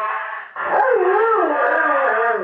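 Labrador howling along to a song played through a megaphone. A loud, wavering howl starts about half a second in and rises and falls in pitch over the music.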